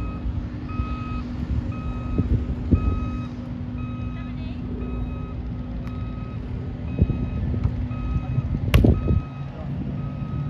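A heavy vehicle's reversing alarm beeps steadily, about once a second, over the steady low drone of its engine. Near the end comes a single sharp smack of a hand hitting a volleyball.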